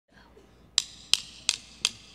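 Drumstick clicks counting in a band: four sharp, evenly spaced clicks, about three a second, starting about three-quarters of a second in.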